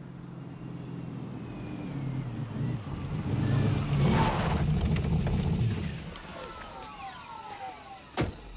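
A car driving up close, its engine rumble growing to its loudest about halfway through and then dying away. A few falling whining tones come near the end.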